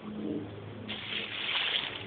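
Water splashing in a shallow creek, starting suddenly about a second in and loudest near the end.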